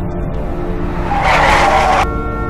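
Dark background music with a steady low drone, and a loud harsh screech that swells in about a second in and cuts off abruptly.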